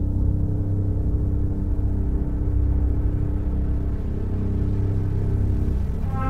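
Intro of a breakbeat electronic dance track: a deep, steady low drone with held tones above it, the higher tone dropping away near the end.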